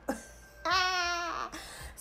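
A woman laughing: one drawn-out, wavering laugh sound from about half a second in, lasting under a second, after a breathy start.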